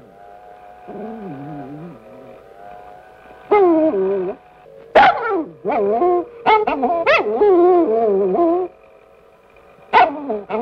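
A small dog whining and yipping: a run of short, loud cries that bend up and down in pitch, starting about three and a half seconds in.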